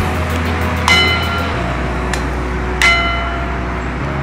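A small bell hung on a stand is struck twice, about two seconds apart, each strike ringing out in several bright metallic tones that fade over a second or so. Background music with a steady bass plays underneath.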